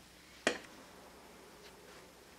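A single sharp click about half a second in, then faint, light scratching of a pencil drawing small circles on a sheet of craft foam.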